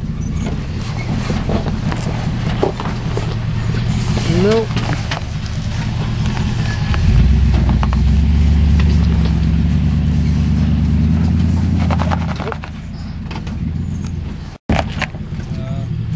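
Pickup truck's engine running under load as it tries to pull a loaded car trailer over a rock. The engine works harder and louder for about five seconds from about seven seconds in, then eases off. The sound cuts out for an instant near the end.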